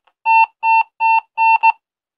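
Motorola PFD3000 handset's electronic beeper sounding five short beeps of the same pitch, about two and a half a second, the last one shorter and close on the one before.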